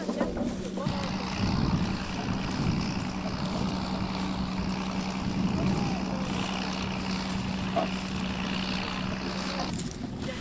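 Open-field ambience: wind noise on the microphone over a steady low hum, with faint voices of field workers in the background. The hum stops just before the end.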